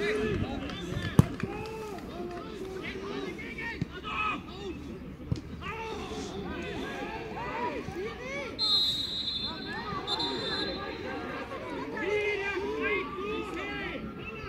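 Footballers shouting and calling to each other on the pitch, with a sharp kick of the ball about a second in and a couple of lighter knocks later. A steady high whistle sounds for about two seconds past the middle.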